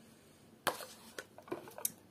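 A metal teaspoon clicks against a ceramic pot while scooping thick Greek yogurt. There is one sharp click less than a second in, then a few lighter ticks.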